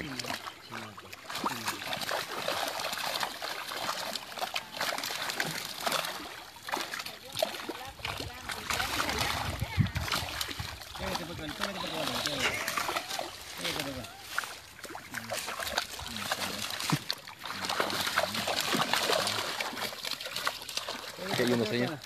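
Pond-farmed fish thrashing and splashing in shallow, muddy water as a seine net is hauled in to the bank, the splashes coming irregularly throughout.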